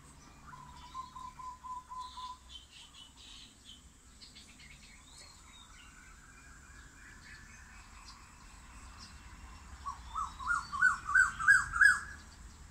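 Birds calling: a short run of quick, even notes near the start and a few higher chirps, then, near the end, a louder series of quick notes that climb steadily in pitch.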